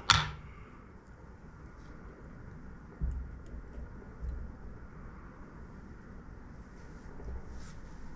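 Faint handling noise from fly tying at a vise: soft low bumps about three seconds in, again a little after four seconds and near the end, with a few light ticks.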